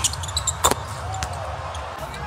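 A basketball bouncing on a hardwood court: a few sharp thuds, the loudest about two-thirds of a second in, with a short squeak a little later, over a steady low arena rumble.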